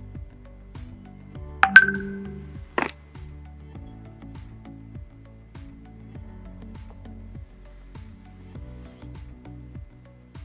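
Soft background music, cut across by a sharp, ringing clink against a glass bowl just under two seconds in, then a second, shorter knock about a second later.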